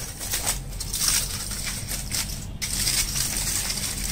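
Aluminium foil wrapper crinkling and crackling irregularly as it is folded back around a burger held in the hands, with a short break about two and a half seconds in.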